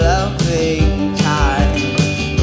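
A live band playing a slow rock song: a woman's lead vocal sings two short phrases over strummed acoustic guitar, electric guitar and a steady drum beat.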